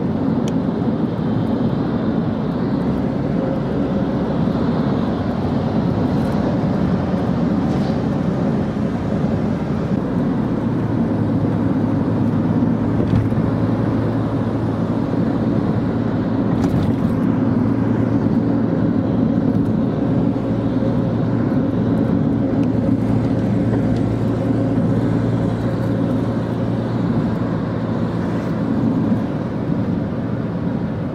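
A car driving, with steady engine and road noise heard from inside the cabin. A low steady hum settles in about a third of the way through.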